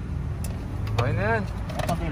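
A steady low car-engine hum at idle, with a few light plastic clicks as a side-mirror housing and its cover are handled.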